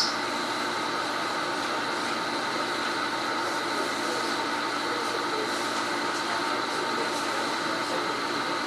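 Steady background hum and hiss of room noise with a few faint constant tones, unchanging throughout.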